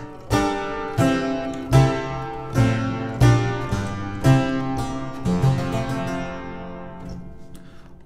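Harpsichord playing a chordal contrapuntal sequence in the second line of the exercise, tried with a D-sharp that produces an augmented chord. The chords are plucked about once a second, and the last one dies away near the end.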